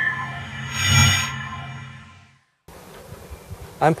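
Logo sting: a swelling electronic chord of several steady tones that peaks about a second in and fades out. It is followed by a faint steady background hiss, and a man starts speaking at the very end.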